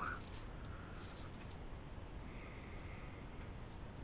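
Faint soft pressing and paper rustling as fingertips dock pizza dough on paper sheets, over a steady low room hum.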